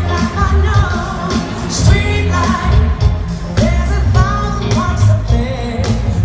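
Live soul-pop band with a female lead singer over heavy bass and steady drum hits, recorded from the audience stands of a large arena.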